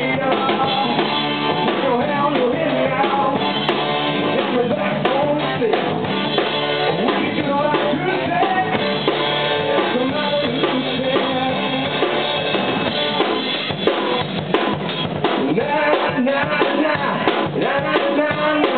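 A rock band playing live: a drum kit keeping a steady beat under acoustic and electric guitars and a keyboard, with no words sung. The sound is steady and full.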